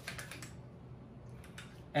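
Light clicks and taps from hands handling a 9mm AR-style pistol-caliber carbine: several quick clicks in the first half second, then a fainter one about one and a half seconds in.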